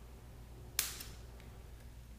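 A plastic ball link snapping onto its link ball on an RC helicopter's flybar head: one sharp click a little under a second in, with a fainter click just after.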